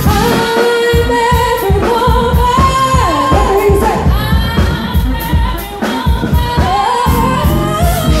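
Live amplified pop music: a woman sings long held notes with a wavering vibrato over a band with a steady drum beat and bass, in a large reverberant room.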